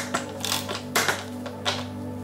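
Small hand ratchet clicking in a few short, irregular strokes over background music.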